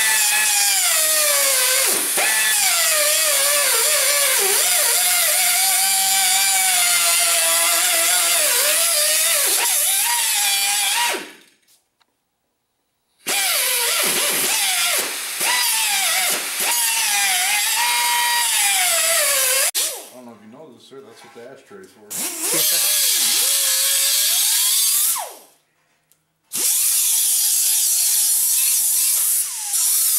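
Small handheld cut-off tool with a thin abrasive wheel cutting and notching a steel bar, in four long runs with short pauses between. Its high whine sags and wavers in pitch as the wheel bites into the metal.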